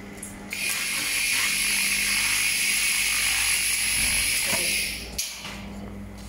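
MYT 2000 W handheld laser cleaning head ablating rust from a steel plate: a steady hiss with a thin high whine, starting about half a second in and cutting off with a click near the end.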